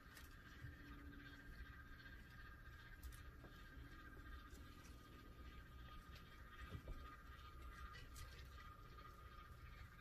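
Near silence: a faint steady high hum with a few soft, faint clicks.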